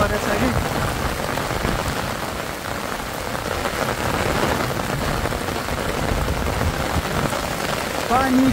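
Heavy rain falling steadily, the drops hitting the fabric umbrella held just over the microphone.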